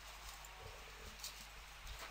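Very faint, steady background hiss from the recording microphone, with no distinct sound event.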